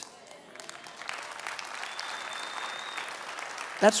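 Congregation applauding: many hands clapping, rising about a second in and going on until speech resumes near the end, with a high steady tone heard for about a second in the middle.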